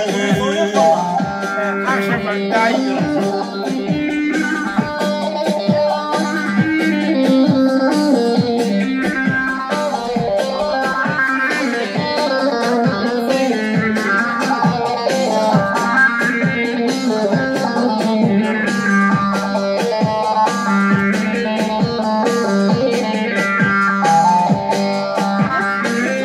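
Instrumental passage of a Turkish song: a plucked string instrument playing a quick, busy melody over a steady low drone.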